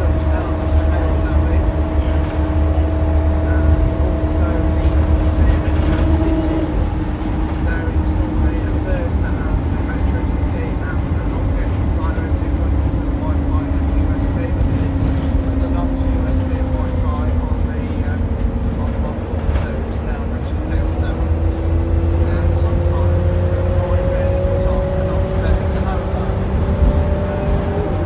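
Inside a moving Optare Versa single-deck bus: low engine and road rumble with a steady drivetrain whine. The whine holds its pitch at first, falls slowly through the middle as the bus eases off, then rises again as it picks up speed.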